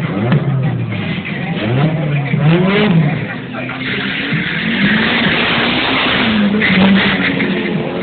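Turbocharged Suzuki Swift GTi accelerating hard down a drag strip, its engine note climbing and dropping several times in the first few seconds, then a loud rushing noise in the second half as it pulls away.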